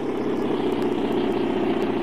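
Crane engine running steadily with a low, even drone while it lowers a load to the ground.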